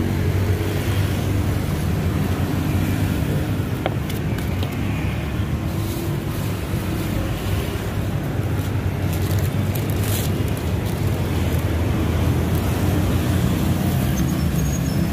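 Steady low rumble of motor traffic on a busy city road, engine hum running on without a break.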